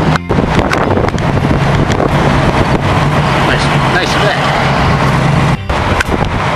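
Wind buffeting the microphone of a camera carried on a moving bicycle riding into a headwind, mixed with road traffic, over a steady low hum. The sound dips briefly just after the start and again near the end.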